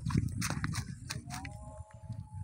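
A freshly landed mrigal carp flapping on dry grass and earth, making a run of short irregular slaps and knocks over a low rumble.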